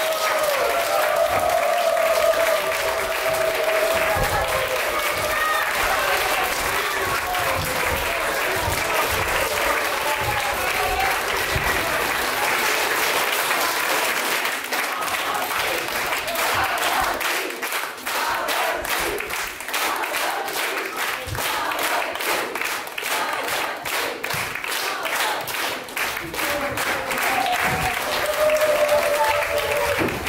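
Audience applauding, sustained clapping throughout, with single claps standing out more separately in the second half.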